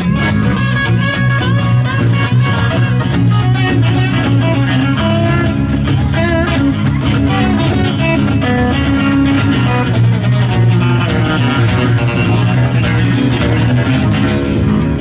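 Live band playing an instrumental passage of an acoustic song: strummed acoustic guitars over an electric bass line, with a steady rhythmic beat.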